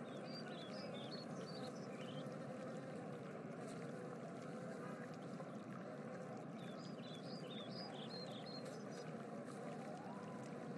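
Faint, steady rushing noise like running water, with two short runs of high chirps, one near the start and one about two-thirds of the way through.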